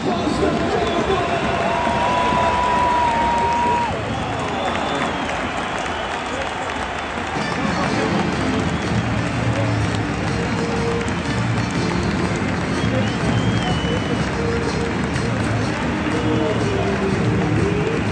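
Large football stadium crowd noise mixed with music over the public-address system. A deeper, bass-heavy part of the music comes in about seven seconds in.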